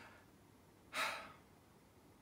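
A man's single short sigh, one audible breath about a second in, in a pause while he searches for words.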